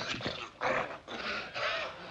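Strained grunting and hard breathing from wrestlers grappling in a bear hug, in about three bursts.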